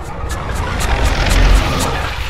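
A low rumble swelling to a peak about a second and a half in, then easing, over eerie background music.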